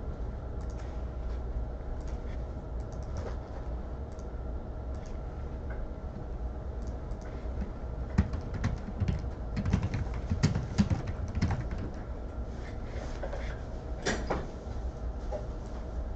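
Scattered clicks and taps from a computer mouse and keyboard at a desk, with a busier run of knocks and taps in the middle, over a steady low hum.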